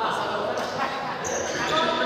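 Young people's voices chattering and calling out, echoing in a large sports hall, with a few thuds and a short high squeak about one and a half seconds in.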